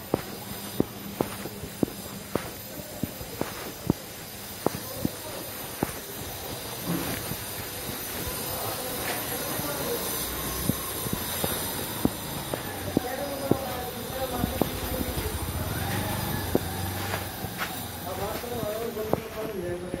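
Footsteps on a hard, dusty lane, about one sharp step a second, over a steady street hum. Indistinct voices come in from about a third of the way through and run on to the end.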